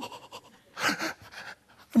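A man breathing out hard in a breathy burst about a second in, followed by a couple of shorter, fainter breaths.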